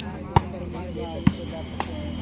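Volleyball being struck by players' hands: sharp slaps, the loudest about half a second in and another a second later, with a lighter one near the end. Voices chatter in the background.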